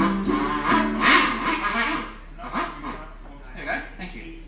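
Harmonica with a small acoustic guitar closing out a song: a held harmonica chord, a loud bright flourish about a second in, then the playing drops away and quieter voices carry on.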